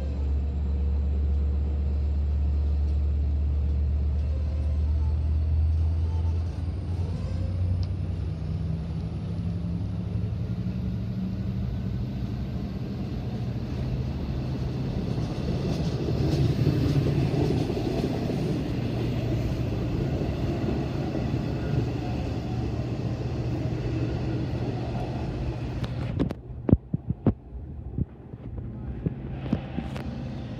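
Long Island Rail Road diesel train with bilevel coaches at the platform: a strong low hum, then a thin high whine that rises slowly while a heavier rumble builds as the train gets moving. Near the end the sound drops off abruptly and a few sharp knocks follow.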